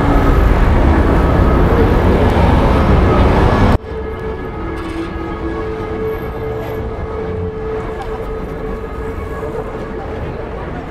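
Loud city street ambience with a deep rumble of passing traffic. It cuts off suddenly about four seconds in to a quieter ambience with a faint steady hum.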